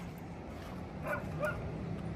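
Two short, high calls from an animal, about a second and a second and a half in, over a steady low murmur.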